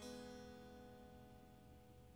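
Electric guitar chord strummed once and left to ring, fading slowly and faintly.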